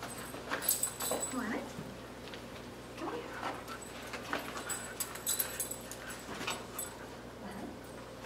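A husky whining in several short whines that rise and fall in pitch, with light clicks in between.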